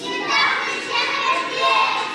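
A group of young children's voices together in chorus, in short phrases.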